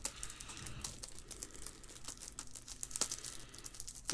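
Faint, scattered light clicks and rustling of trading cards being handled and shuffled through.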